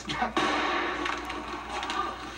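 A sudden hit about a third of a second in as a cream pie strikes a man's face, followed by music held through the rest, heard through a television's speaker.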